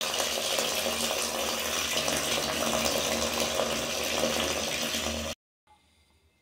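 A thin stream of water pouring steadily into a plastic bucket of horse manure, splashing on the water and manure inside; it cuts off suddenly a little after five seconds.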